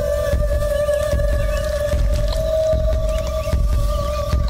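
Dramatic background score: one held droning note with a slight waver, sustained over a low rumbling bed with soft irregular beats.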